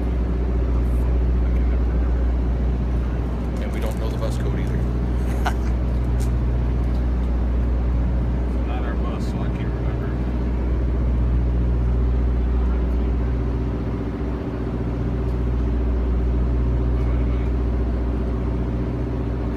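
Tour bus idling: a steady, low engine hum that holds level throughout.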